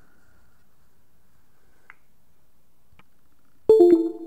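Near-quiet room tone with two faint clicks, then near the end a sudden, loud electronic chime of a few steady tones, the kind a computer or phone plays when a USB device connects.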